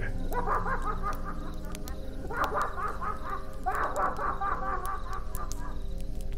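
A sound effect of maniacal laughter: three quick runs of rapid ha-ha-ha pulses, over a steady low background tone.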